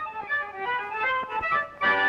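Cartoon score music: a light, sparse tune of short notes. It breaks off briefly near the end, then the fuller band comes back in.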